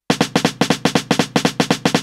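A snare drum sample machine-gunned by note repeat in sixteenth notes with swing applied: a fast run of about eight identical hits a second, spaced unevenly long-short.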